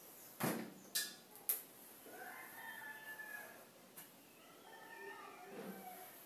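A few sharp taps of chalk on a blackboard, then a faint rooster crowing twice in the distance.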